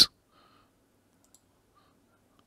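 The end of a spoken word, then near silence broken by one faint, short computer mouse click a little past halfway through.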